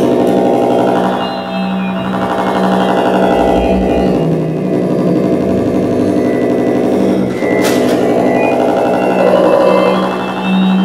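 Electroacoustic music from a live double bass processed in real time through a Kyma system: a dense, sustained drone of layered pitched tones. A low rumble swells through the middle, and a single sharp noisy stroke cuts across it about three-quarters of the way through.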